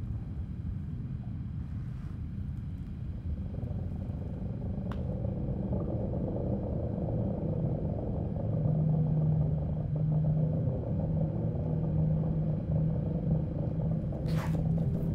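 A low, steady rumbling drone that grows louder about two-thirds of the way through, as a steady humming tone comes in over it.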